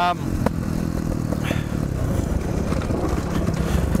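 Dirt bike engine running steadily under the rider, picked up by the helmet-mounted camera, with a single light knock about half a second in.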